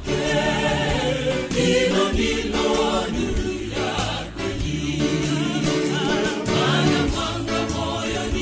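Choir singing a gospel song over instrumental backing with a steady beat.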